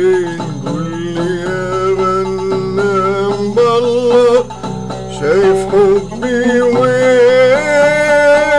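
Arabic folk music on the oud: a melody of long held, slightly wavering notes that step up and down in pitch over a steady lower accompaniment.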